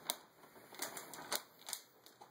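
A plastic treat bag being handled: about four sharp clicks with faint crinkling in between.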